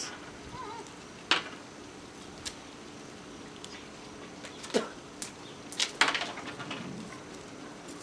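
Mentos mints being worked out of their paper roll by hand, with a few scattered sharp clicks as candies drop onto a plastic folding table. The mints come out slowly.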